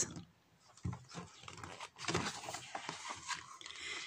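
Starting about a second in, soft irregular rustling and handling noise from the paper page of a picture book being turned.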